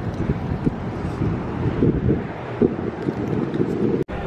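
Wind buffeting the camera microphone: a low, gusty rumble.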